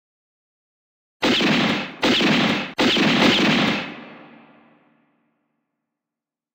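Three gunshots from a western film soundtrack, about three-quarters of a second apart, each ringing on, the last echoing away over about two seconds.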